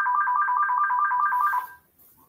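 Telephone ringing: a rapid electronic two-tone warble, about six trills a second, that stops shortly before the end.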